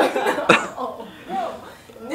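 Voices talking and laughing, broken by one sharp cough about half a second in.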